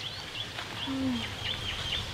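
Small birds chirping: a run of short, high chirps repeating several times a second over low outdoor background noise.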